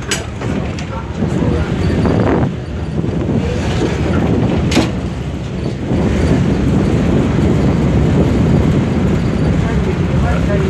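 Steady low rumble of wind and a boat's engine while the boat crosses choppy water. It grows a little louder about halfway through. A sharp click comes near the start and another about halfway through.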